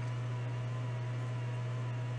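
Steady low hum with a faint, even high whine from the running micro-soldering bench equipment, unchanging throughout.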